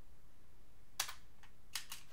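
A few keystrokes on a computer keyboard: one sharp click about halfway through, then two more in quick succession near the end.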